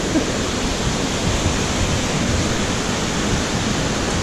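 River water rushing over a weir and through the boulders below it: a steady, unbroken rush of white water.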